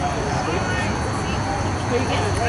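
Distant shouting voices of players on a rugby pitch, with a few drawn-out calls, over a steady outdoor rumble.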